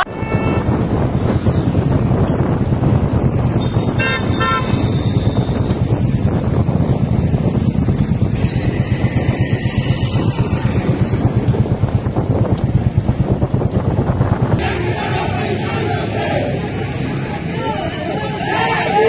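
A low, fluttering rumble of wind and traffic noise on the street, with one short vehicle horn toot about four seconds in. Near the end, crowd voices take over.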